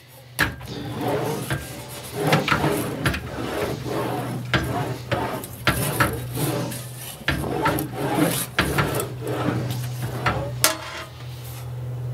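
Sheet steel being rolled back and forth through an English wheel with a slight radius lower die, an irregular rasping metal scrape with sharp clicks and knocks as the panel is worked. The wheel is putting a slight curve into a flat patch panel.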